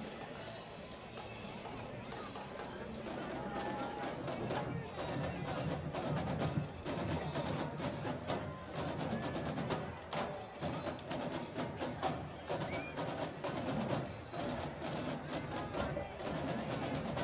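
Drumline drums playing a fast cadence of sharp strikes over the noise of the crowd in the stands, getting louder a few seconds in.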